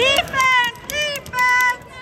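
Wheelchair tyres squealing on a hardwood gym floor: four short, high squeaks about half a second apart as the chairs turn and brake.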